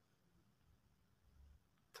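Near silence: room tone in a pause between recited lines.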